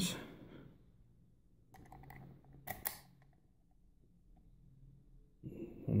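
Faint handling clicks of a brass key and a Cisa half euro lock cylinder held in a bench vise, with two sharper metallic clicks about three seconds in, over a faint low hum.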